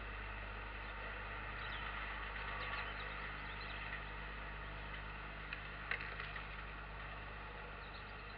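Steady hiss and low electrical hum from an analog camcorder recording, with a few faint small clicks about two to three seconds in and two sharper ticks near six seconds.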